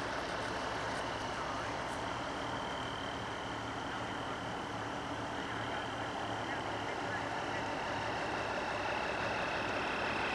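A truck engine running steadily, with no change in speed, under an even hiss and a faint steady high tone.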